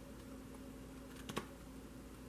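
A few faint, light clicks, with a small cluster a little over a second in, over quiet room tone with a low steady hum.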